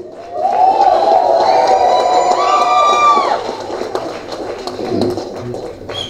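Audience cheering with high whistles for about three seconds, then dying down into crowd murmur with scattered claps.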